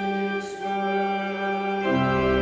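Church organ playing slow, sustained chords. The low bass notes drop out for most of the moment and come back in near the end as the chord changes.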